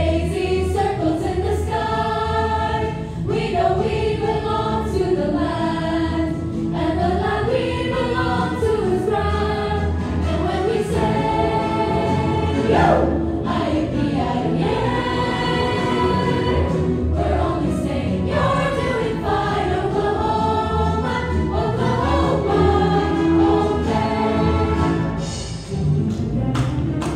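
A large chorus of young voices singing a show tune together, with instrumental accompaniment underneath.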